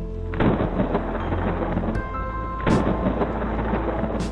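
Slow background music of long held tones, broken by two loud rumbling crashes, one about half a second in and one near the three-second mark, each fading out over about a second.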